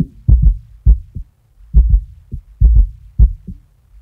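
Drum loop with only its low band soloed through a multiband compressor: kick drum thumps in an uneven beat, with the cymbals and upper drums filtered away.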